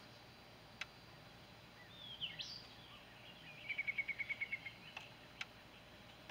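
Birds calling faintly: a few short chirps about two seconds in, then a rapid, even trill of about a dozen notes on one pitch near the middle. Two faint clicks, one near the start and one near the end.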